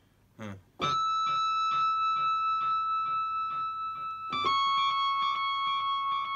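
Crumar Toccata combo organ holding a sustained chord from about a second in, with a soft pulse repeating a little over twice a second; the chord changes to a new one about four seconds in.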